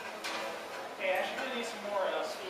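Indistinct talking in the room, with a sharp click about a quarter second in.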